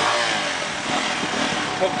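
Kanuni Phantom 180 motorcycle engine running and being revved.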